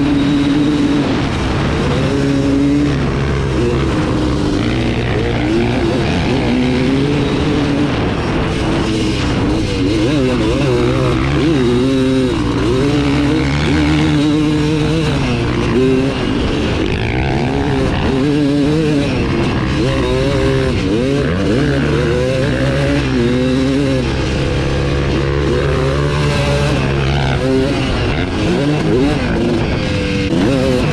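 Suzuki RM250 two-stroke single-cylinder dirt bike engine revving up and down under hard riding, its pitch rising and falling again and again as the throttle is worked. Wind rushes over the helmet microphone underneath.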